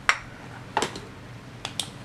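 A few short, sharp clicks from handling a microscope while its magnification is changed and its light is repositioned. The last two clicks come close together near the end.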